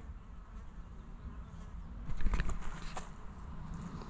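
Bees buzzing, louder for about a second a couple of seconds in, with a few faint rustles.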